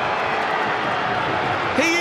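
Steady stadium crowd noise from a football match, heard through a TV broadcast, with a commentator beginning to speak near the end.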